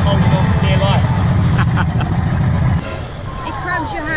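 Loud, irregular low rumble of wind buffeting the camera microphone out on the water. It cuts off suddenly about three seconds in, and faint voices follow.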